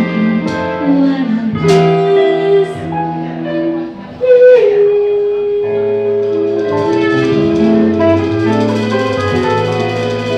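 Small live jazz band playing with a female singer: electric guitar, drum kit and keyboard, with one long held note through the middle.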